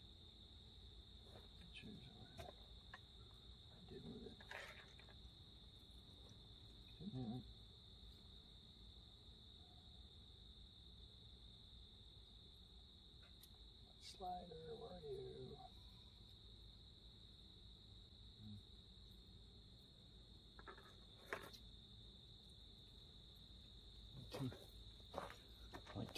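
Near silence but for a steady high-pitched cricket trill, with a few faint clicks.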